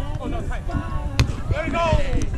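A beach volleyball struck once with a sharp slap about a second in, over a steady bed of voices.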